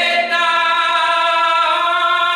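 Male flamenco cantaor singing a milonga, holding one long, steady note.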